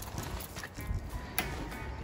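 A metal hand spray bottle misting beef stock onto smoking short ribs: a couple of short, sharp spritzes with light clicks of handling over a low steady rumble.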